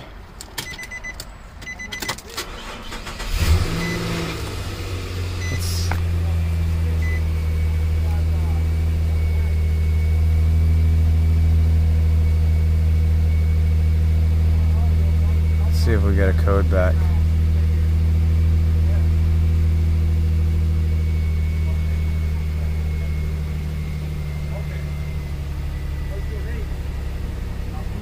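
Nissan Frontier 4.0-litre V6 started: a brief crank about three seconds in, then the engine catches and runs at a steady idle. The idle is a little louder through the middle and eases slightly lower near the end.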